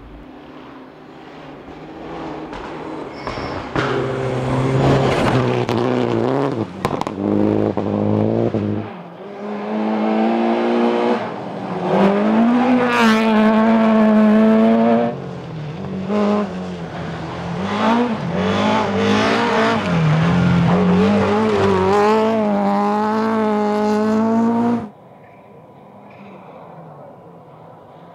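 Rally cars at speed on gravel stages, engines revving hard and rising and falling in pitch through gear changes as they pass, in several loud passes. The sound cuts off sharply about a second before the end.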